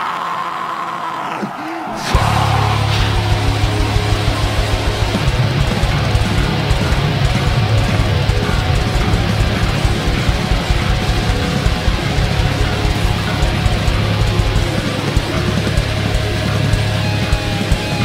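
Metalcore band playing live at full volume: after a thinner, quieter opening, the whole band comes in suddenly about two seconds in with distorted guitars, bass and rapid, heavy drumming that runs on steadily.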